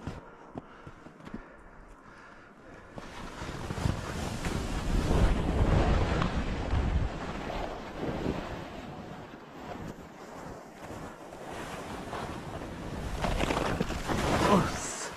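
Skis sliding and scraping through soft, chopped-up snow, with wind rushing over the microphone. It is quieter for the first few seconds, then builds about three to four seconds in and stays loud as the skier moves downhill.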